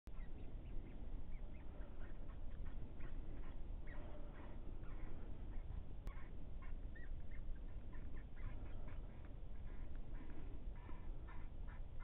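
Electronic predator call playing faint, scattered squeaky chirps over a steady low rumble.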